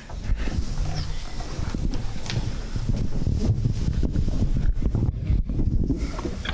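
Handheld microphone being handled and moved over the PA: irregular low rumbling with small knocks.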